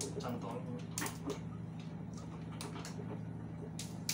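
Small scattered clicks and rattles of a key working a lock on a refrigerator door, over a steady low hum of the ship's machinery.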